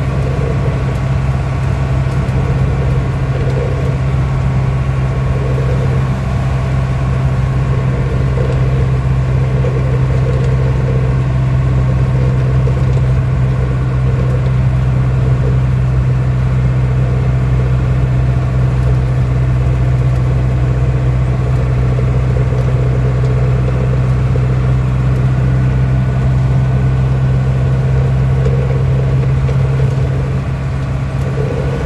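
Diesel engine of a Mercedes-Benz 608 truck, heard from inside the cab, running at a steady pace under way: a constant low drone with no gear changes or revving.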